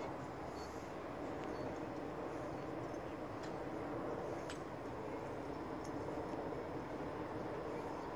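Steady outdoor background noise, a low even rumble with no distinct source, with a few faint clicks about three and a half and four and a half seconds in.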